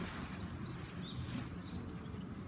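Faint outdoor background noise with a low rumble, and two short, faint bird chirps in the middle.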